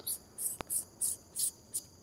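Insects chirping in short, high-pitched pulses, about three a second, with a single sharp click a little over half a second in.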